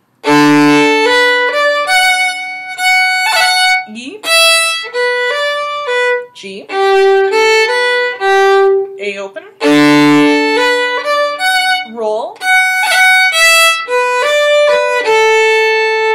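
Solo fiddle playing a lively traditional tune phrase, opening with a double stop on the A and D strings slurred into B, then a run of short bowed notes. About ten seconds in, the phrase starts again on the same double stop.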